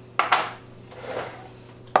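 Metal cocktail shaker tin and blender cup being handled and set down on a wooden counter: two sharp clinks just after the start, a soft scrape about a second in, and a knock at the end.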